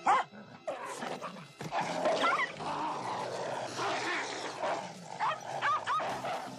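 A dog and a wolf fighting: rough snarling and growling throughout, with short high yelps about two seconds in and again near the end.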